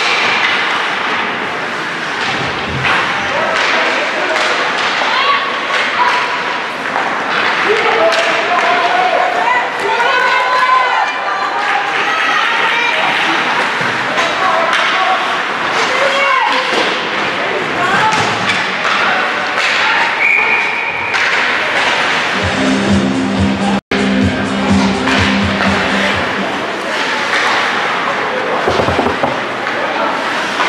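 Rink sound during an ice hockey game: spectators' and players' voices and calls mixing without clear words, with repeated thuds of pucks, sticks and bodies against the boards. A low steady tone sounds for a few seconds about three quarters of the way through.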